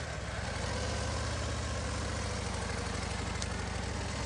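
Harley-Davidson Road Glide's V-twin engine running steadily at low revs as the motorcycle pulls away.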